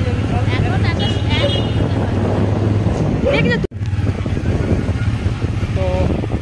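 Motorcycle engine running steadily while riding, with wind and road noise. The sound cuts out for an instant a little past halfway, then the riding noise goes on.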